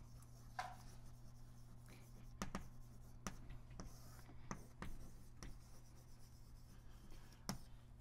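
Chalk writing on a blackboard: faint, scattered taps and short scratches of the chalk against the board, over a steady low electrical hum.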